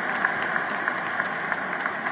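Audience applauding steadily, a dense patter of hand claps.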